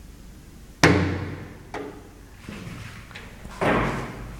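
Old elevator's door slamming shut with a sharp bang that rings on briefly, then a lighter click about a second later and another heavy thud near the end.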